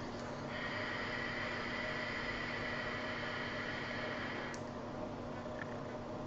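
Long draw on a Kanger Subtank vape tank fired at 30 watts on a 0.5-ohm coil: a steady airflow hiss with a faint whistle for about four seconds, cutting off suddenly, then a softer breath out.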